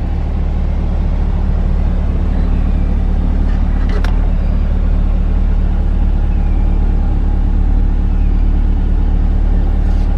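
C8 Corvette Stingray's LT2 V8 idling steadily, a low, even hum. A single short click about four seconds in.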